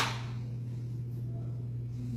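A steady low hum runs throughout, with one sharp knock right at the start that rings off briefly.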